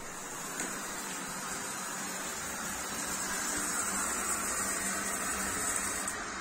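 Steam hissing steadily into a steam room, coming in about half a second in and holding even.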